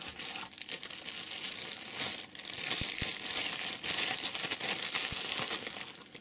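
Thin plastic wrapper crinkling steadily as a folding knife is worked out of it, with a few sharper clicks along the way.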